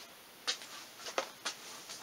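A few brief, faint clicks and rustles of handling on a workbench, spread across the couple of seconds.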